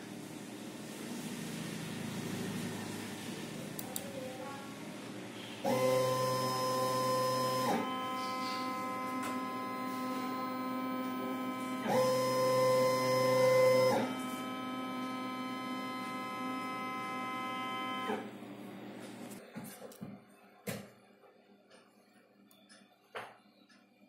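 Redsail vinyl cutting plotter's stepper motors whining steadily as the machine moves, the pitch changing in steps as each move changes and loudest about twelve seconds in. The whine stops a few seconds before the end, leaving a few light clicks.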